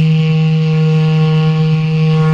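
Background music: a single long note held at one steady pitch.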